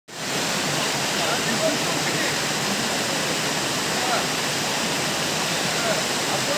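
Steady rush of a waterfall: an even, unbroken hiss of falling water.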